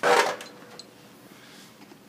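A single loud, sudden clack right at the start, dying away within about half a second, then a quiet room background with a couple of faint ticks.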